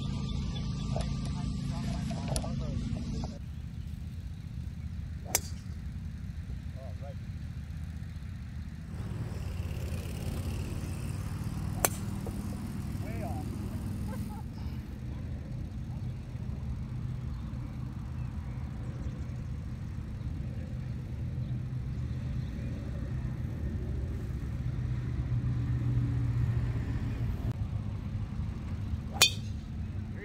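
A driver strikes a golf ball off the tee with one sharp click near the end, over a steady low rumble. Two similar sharp clicks sound earlier.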